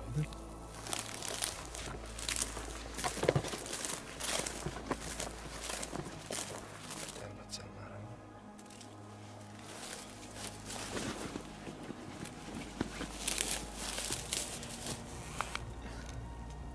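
Rustling and irregular clicks and knocks of hunting gear being handled: a backpack rummaged through, a handheld remote taken out and a shooting stick set up.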